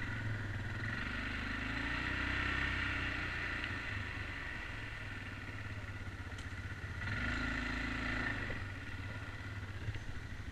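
ATV engine running as the quad rides a gravel trail, picking up twice under throttle: about a second in and again about seven seconds in.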